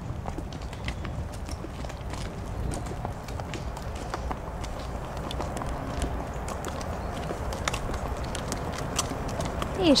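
Several horses walking on a dirt path: irregular hoof clops over a steady low rumble.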